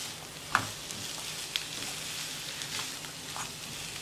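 Chicken pieces and sliced onions sizzling in hot oil in a nonstick frying pan while being stirred with a plastic spatula. A steady sizzle with a few light taps and scrapes, the sharpest about half a second in.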